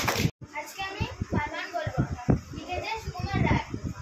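A roomful of children chattering and calling out over one another. A short noisy burst at the start is followed by a brief moment of dead silence before the chatter resumes.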